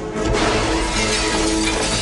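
A large plate-glass window shattering as a man is thrown through it: a sudden crash about a quarter second in, followed by the spray of breaking glass, over film-score music.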